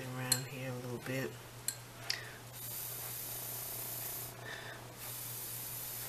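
Two bursts of steady, airy hiss, the first about two seconds long and the second about a second, from breath blown across nail polish floating on water in a small cup to set the film for a water-marble veil.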